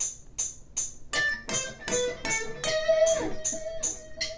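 Electric guitar playing a lead line over a metronome click. The picked notes begin about a second in and end on a held note, while the metronome clicks evenly about three times a second.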